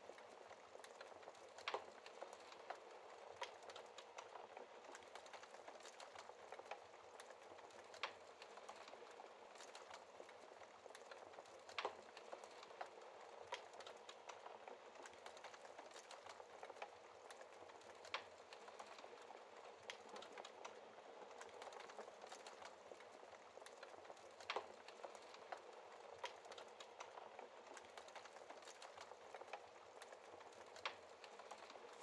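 Faint crackling of a wood fire in a fireplace: a steady soft hiss with sharp pops every second or few.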